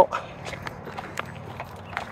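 Footsteps while walking, heard as a few light, irregular taps over a low outdoor background.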